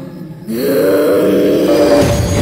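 A deep, held groaning sound, pitched and slightly rising, from a horror film's soundtrack. It comes in suddenly about half a second in and swells loudly over a musical background.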